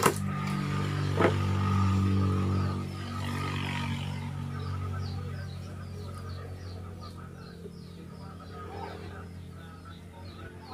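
Two sharp clicks about a second apart as the PVC replica air rifle is handled at the bench, over a steady low hum that fades over several seconds. Birds chirp throughout.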